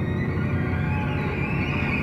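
Background music score: a sustained drone of held tones with no clear beat.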